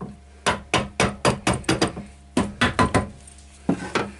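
A wooden lathe riser block tapped repeatedly by hand, with sharp knocks in quick runs: about eight, a short pause, five more, then one near the end.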